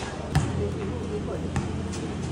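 A basketball hitting a concrete court, two sharp bounces a little over a second apart, the first the louder, over a low steady hum and distant voices.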